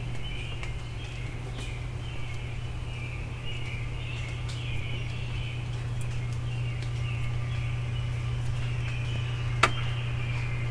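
A chorus of many songbirds chirping and singing together without pause, over a steady low hum. Faint clicks are scattered throughout, and one sharp click near the end is the loudest sound.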